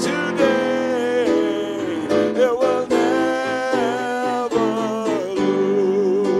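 Live worship band playing a slow gospel hymn: strummed acoustic guitars over a full band, with voices holding long wavering notes.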